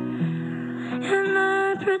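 A slow, sparse acoustic guitar accompaniment with a young girl's solo voice. A held sung note comes in about a second in.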